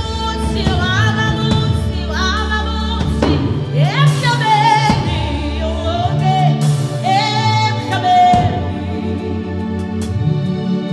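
Woman singing a gospel worship song with held, gliding notes over a sustained instrumental backing.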